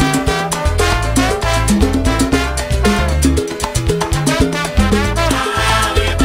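Cuban salsa (timba) music in an instrumental passage: a repeating bass line under melodic lines and dense, driving percussion, with no singing.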